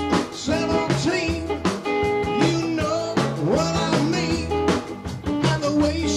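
Rock band playing live: drum kit, electric guitar and keyboards over a keyboard bass line, with a voice singing in places.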